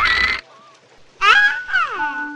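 A brief noisy sound effect right at the start, then, after a short lull, a cartoon character's startled cry: one wavering, bleat-like yell that slides down in pitch in the last second.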